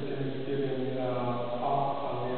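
A man's voice intoning text in a chant, held on one steady low pitch while the vowels change, with brief breaks between phrases.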